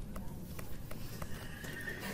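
A pen stylus tapping on a tablet screen while a letter is written: a few faint, irregular clicks over low room noise.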